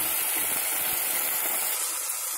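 Chopped onions and tomatoes sizzling as they fry in hot oil in an enamel pot, stirred with a steel ladle. The sizzle is a steady hiss.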